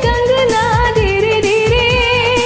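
A woman singing one long held note with a slight waver over a Bollywood karaoke backing track, its drum beat thumping about twice a second.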